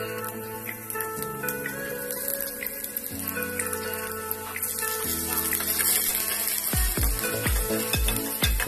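Chopped ginger and green chillies sizzling in hot oil in a stainless steel pot, under background music. The music's kick-drum beat comes in near the end.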